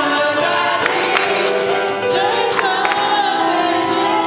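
Live gospel worship music: a woman leads the song into a microphone and many voices sing with her, over instrumental accompaniment and a steady beat of percussion strokes.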